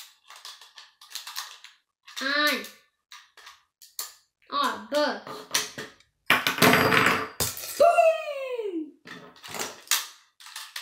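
Small plastic clicks of Beyblade parts being handled and fitted together, between short wordless vocal sounds from a child. Past the middle comes a loud hissing burst, followed by a long voice-like sound that falls steadily in pitch.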